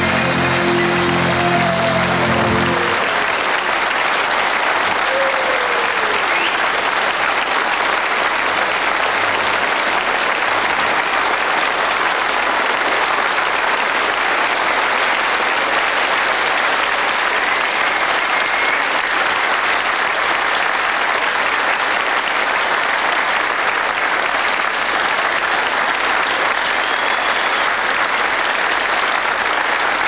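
A large concert audience applauding in a sustained ovation, an even wash of clapping. A held musical chord from the band ends about three seconds in, leaving the applause alone.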